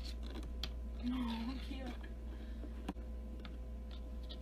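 Scattered light taps and clicks of a cat's paws and claws against the glass of a lizard terrarium, with one sharper knock about three seconds in, over a steady low hum.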